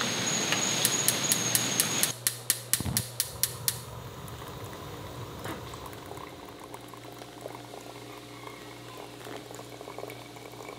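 A steady high-pitched tone over an evening hiss for the first two seconds, overlapped by a run of sharp, evenly spaced clicks, about five a second, lasting about three seconds. Then hot water from a stovetop kettle pours quietly into a ceramic pour-over coffee dripper over a low room hum.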